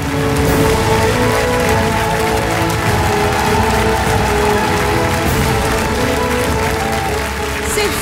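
Large studio audience applauding a performance, a dense steady clatter of clapping, with held music chords sustained underneath.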